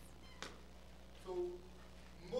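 A single sharp click, then a brief vocal sound from a man's voice, quiet in a lecture room.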